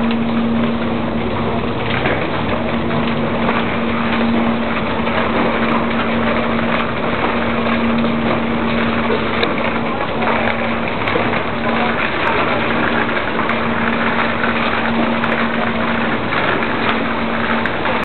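A ferry's engine running with a steady hum and one constant low tone, under the bustle and footsteps of a crowd walking.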